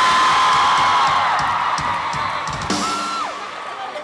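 Live rock band playing on stage: drum kit hits about three a second, with long high screams from the crowd over them. It dies down in the last second or so.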